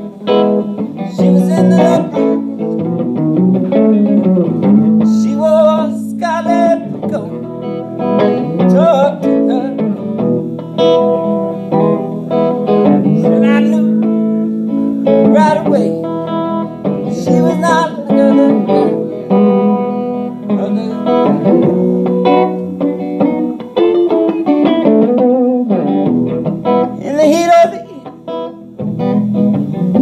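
Electric guitar played live, a continuous run of picked notes and chords.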